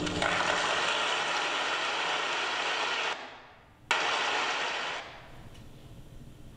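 A steady hiss-like rush of noise that cuts off abruptly about three seconds in. It returns with a sharp click a moment later and dies away about five seconds in.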